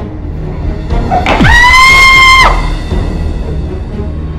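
Dramatic film background music with a low steady bed. About a second in comes a loud, high held note lasting just over a second, which slides up at its start and drops away at its end, with a falling sweep beneath it.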